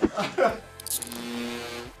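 Short editing sting for a round title card: a quick swoosh about a second in, then a held chord of a few steady notes that stops just before the end. A brief bit of voice is heard at the very start.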